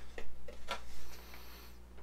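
Hobby knife blade cutting into glued balsa sheeting along a wing rib: a few short ticks and scrapes in the first second, then quieter.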